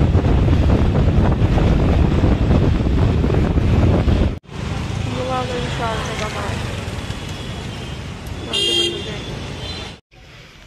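Wind rushing over the microphone and road traffic, heard from a moving motorbike, cutting off abruptly about four seconds in. Then quieter street traffic noise with a short vehicle horn blast near the end.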